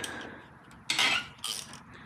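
Metal clinks and rattles of a ratchet, extension and Torx bit being worked on a bolt, the loudest about a second in.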